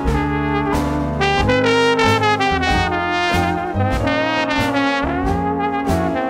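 Small traditional jazz band playing an instrumental passage: trombones and clarinet over a plucked double bass, with a trombone sliding upward in pitch near the end.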